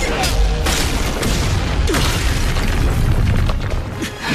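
Fight-scene sound design: booming impacts and rushing sound effects over a dramatic orchestral score, with several sharp hits, loud and dense throughout.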